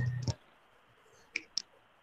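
A few short, sharp clicks over a quiet line: one just after a brief low buzz at the start, then two close together about a second and a half in.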